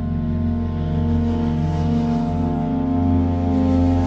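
Native Instruments LORES 'Infinite Blue' preset, layering sampled shakuhachi, clarinet and medieval pipes, playing a held ambient chord over a low drone. The sound slowly swells louder.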